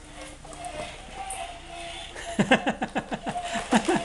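A person laughing in a quick run of bursts, starting about halfway in and growing louder towards the end; faint steady tones sit underneath in the first half.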